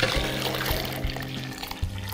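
Vegetable broth pouring steadily from a stainless-steel Thermomix mixing bowl into a glass measuring jug, over background music.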